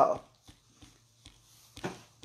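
A man's voice: a short hesitant "uh" at the start, then a brief, quieter voiced sound near the end, with faint small clicks in between.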